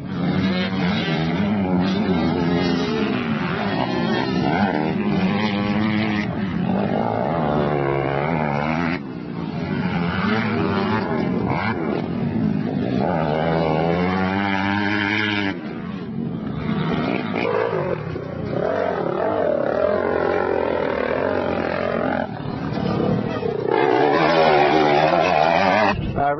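Four-stroke motocross bike engine revving hard and backing off as it is ridden on a dirt track, its pitch climbing and falling with throttle and gear changes. The sound jumps abruptly a few times between shots and is loudest near the end.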